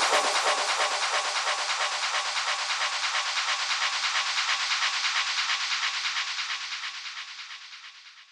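The closing bars of a techno DJ mix: the kick and bass drop out, leaving a hissing, high-filtered noise texture with a quick pulse that fades steadily away.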